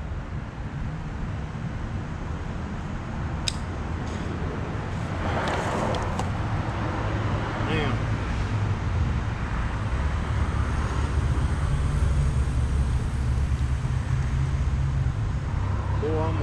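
Low steady rumble of a motor vehicle running close by, growing louder in the second half. About five seconds in there is a brief scraping rustle as the buried conduit is dragged through soil and leaves, and a few light clicks come before it.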